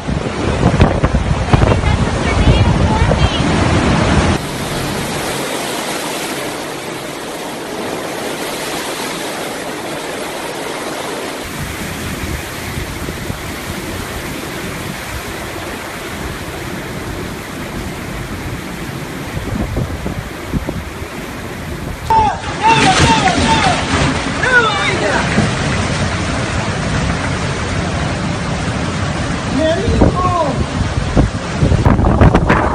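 Storm wind and heavy rain, a steady noise with gusts buffeting the microphone, changing in character at cuts between clips a few times. In the last third, people's voices rise and fall excitedly over the wind.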